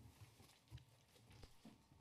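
Near silence: room tone, with a few faint knocks.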